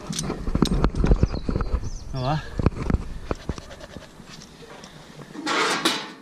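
Close-up handling noise of climbing gear and camera: a run of sharp clicks and knocks, with a short vocal sound about two seconds in and a brief burst of rustling near the end.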